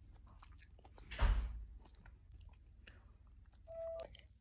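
Faint chewing and small mouth clicks of a person eating, with a brief louder rustle against the phone's microphone about a second in and a short hum near the end.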